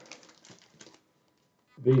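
Faint rustling and a few soft clicks from a vinyl record in a card sleeve being picked up and handled, dying away about a second in.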